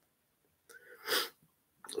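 A short, sharp sniff about a second in: a brief rush of air through the nose, well quieter than the voice, with a faint lip click just before speech resumes.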